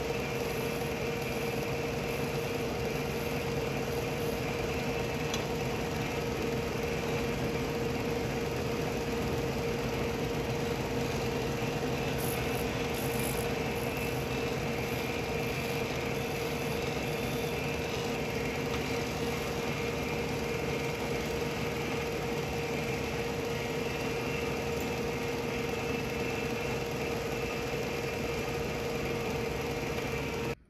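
Disc sander running with a steady hum while the ends of a segmented wood pen blank are pressed against the sanding disc to take off built-up CA glue.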